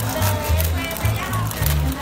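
Music playing with a strong, steady bass beat, about two beats a second, and a voice over it.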